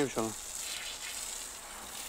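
Pressure-washer water jet spraying against a truck's wheel and tyre: a steady hiss.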